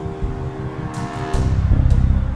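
Film score music: sustained tones that fade out just past halfway, giving way to a deep rumble that swells near the end, with a few sharp ticks.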